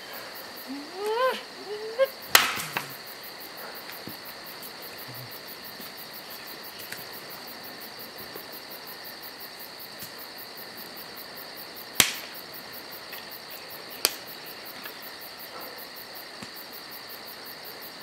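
Insects chirring steadily in a high, even drone, with three sharp clicks or snaps: one a couple of seconds in and two more, about two seconds apart, later on.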